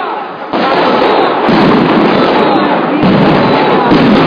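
Loud street din of fireworks popping and banging over crowd noise, rising sharply about half a second in and staying loud.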